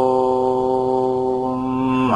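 A man chanting a long, drawn-out "Om", held on one steady low pitch and ending right at the close.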